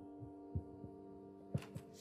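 Faint steady hum with a few soft low thumps from a wired handheld microphone being handled: one about half a second in and two close together near the end.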